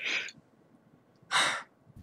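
A person breathing audibly twice: a short breath at the start and a stronger one about a second and a half in, with near silence between.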